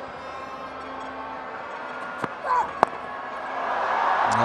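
Stadium crowd noise, then a single sharp crack of a cricket bat hitting the ball near the end, after which the crowd noise swells.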